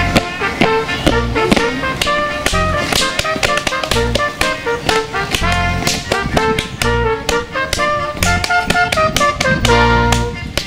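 Upbeat music with a steady beat. Many sharp slaps run through it, the hand slaps on thighs and shoe soles of Schuhplattler dancing.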